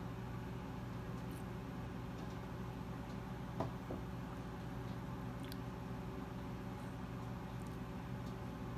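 Quiet room tone: a steady low hum with faint hiss, and one faint click about three and a half seconds in.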